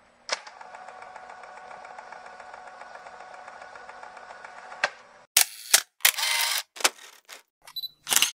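Intro sound effects: a fast, even run of mechanical clicks over a steady tone for about four and a half seconds, then several sharp hits and a short burst of noise.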